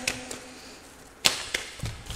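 A deck of tarot cards being shuffled by hand: a sharp swish of cards about a second in, with a smaller one near the end.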